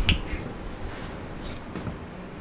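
A sharp click at the start, followed by a handful of faint, light ticks and rustles.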